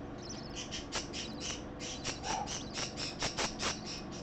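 A small pet animal's feeding sounds: a run of short, high squeaks that come faster and closer together in the second half.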